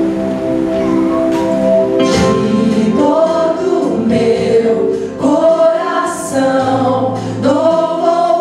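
Women's vocal group singing a Christian worship song in harmony with live accompaniment, the voices coming in about two seconds in over a held chord.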